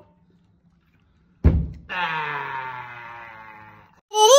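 Near silence, then a single loud thunk about a second and a half in. It is followed by a long pitched sound that slowly falls in pitch and fades away.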